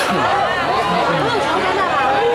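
Crowd chatter: many people talking at once in a steady babble of overlapping voices.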